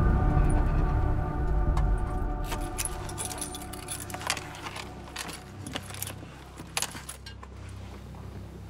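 Eerie music fading out, then a run of keys jangling and small metallic clicks over a steady low hum, as if car keys are being handled in the cabin.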